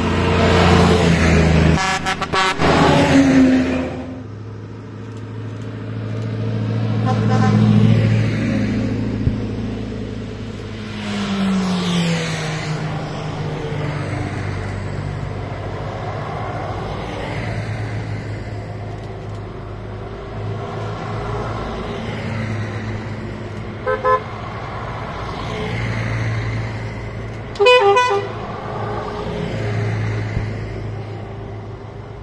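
A convoy of Karosa 700-series buses and a LIAZ rally truck driving past one after another, their engines swelling and fading with each pass. Horns toot several times: a blare a couple of seconds in, a short toot later, and the loudest toots near the end.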